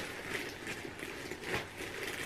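Rustling and light handling noises of packaged items being rummaged through in a shipping box, with one slightly sharper rustle about one and a half seconds in.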